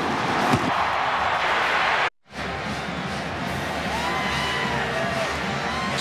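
Football stadium crowd noise with cheering, which cuts out suddenly for a moment about two seconds in, then returns as a steady crowd din with music playing over it.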